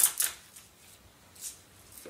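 Short rustling and scraping as the Vanguard Porta Aim shooting rest is handled at its top, right at the start, with a second brief scrape about one and a half seconds in.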